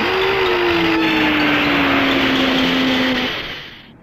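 Tokusatsu kaiju roar sound effect: one long, rasping cry whose pitch sinks slowly, fading out just before the end.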